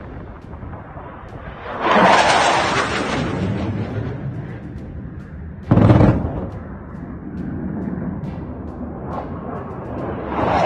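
Military jet engine roar swells about two seconds in and fades, then a single loud bang near six seconds in, an explosion in the air near the jet, dies away in a rumble. The jet's roar rises again near the end.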